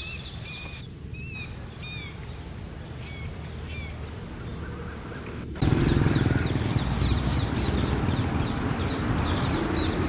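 Small birds chirping in short, high notes over a low background rumble. A little past halfway the rumble abruptly gets much louder and the chirping becomes rapid and continuous.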